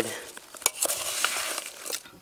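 A spoon stirring sugar-and-cinnamon-coated apple pieces in a metal camp pot: a steady rustling scrape with a few scattered light clicks.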